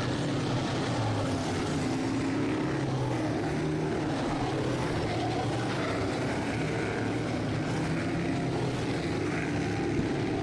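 Sportsman dirt modified race cars running laps on a dirt oval, heard as a steady, blended engine drone of several cars with no single car standing out.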